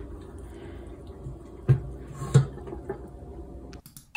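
Steady low hum in a small room, with two soft knocks, one about one and a half seconds in and one about two and a half seconds in. The sound cuts off suddenly near the end.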